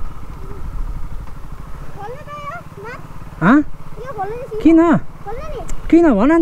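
Motorcycle engine idling with a steady low rumble, while a child's voice speaks a few short, high phrases over it about two to five seconds in.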